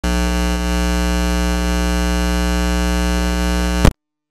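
A steady, loud electronic buzz with many even overtones, unchanging in pitch, that starts abruptly and cuts off with a click just before the end. It is a fault in the audio recording, standing in for the speech of a talker who is still speaking.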